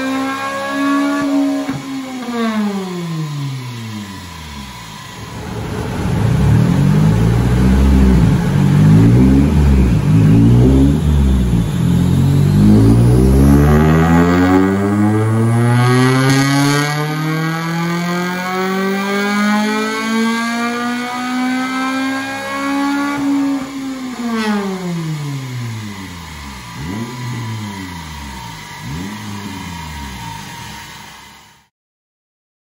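Honda Civic FN2 Type R's 2.0-litre i-VTEC four-cylinder on a rolling road, in a full-throttle power run. The revs wind down at first, then climb steadily from low rpm to near the redline over about fifteen seconds, and fall away when the throttle is released, with a few brief rises and falls near the end.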